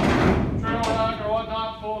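A single bang against the steel side of a stock trailer right at the start, dying away over about half a second, followed by a man talking.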